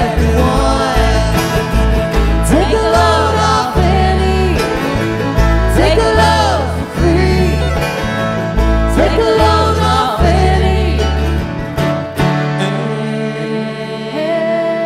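Live bluegrass band playing: acoustic guitars, banjo, mandolin, dobro and fiddle over a pulsing upright bass, with sliding notes in the lead lines. The bass drops out about twelve seconds in.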